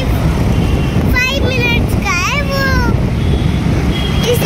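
Steady wind rumble on the microphone from a moving fairground ride. A young girl's high voice calls out from about one second in until nearly three seconds.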